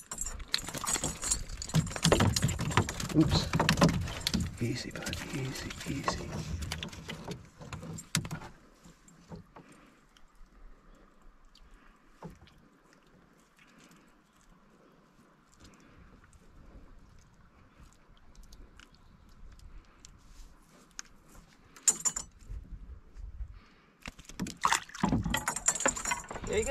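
Clattering and knocking of fishing gear against a canoe's hull while a just-landed brook trout is handled. The knocking is dense for about the first eight seconds, goes quiet for a long stretch with only a few taps, and starts again near the end.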